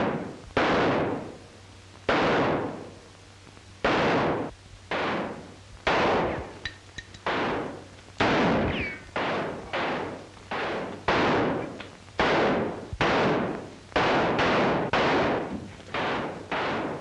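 A long exchange of gunshots in a gunfight, each a sharp crack with a reverberant tail. They are spaced out at first and come faster in the second half, about two a second, over the low hum of an old film soundtrack.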